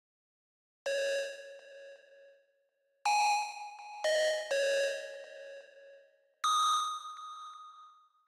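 Single notes from the Glacius synthesizer in Reason 12, played one at a time while patches are auditioned: five bell-like tones at different pitches, each starting sharply and fading away over a second or two.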